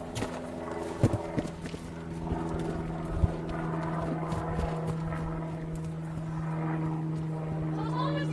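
Horse's hooves thudding on grass as it moves at a trot and canter around a lunge circle, with a few sharp thuds in the first few seconds. A steady low hum runs underneath.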